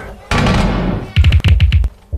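Edited-in comic sound effects: a loud swoosh that fades down, then a fast run of about eight punchy drum-like hits.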